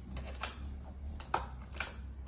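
Handheld stapler clicking as it drives staples into a thin cardboard box: three sharp clicks with a few lighter ticks between them.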